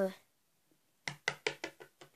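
A plastic toy figurine hopped along a hard tabletop, making a quick run of about six light taps in the second half.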